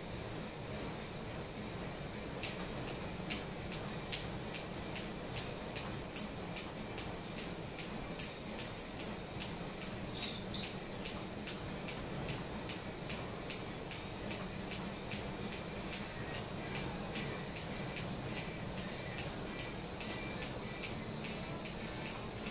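Jump rope slapping a rubber gym floor in a steady rhythm, about two and a half strikes a second, starting a couple of seconds in.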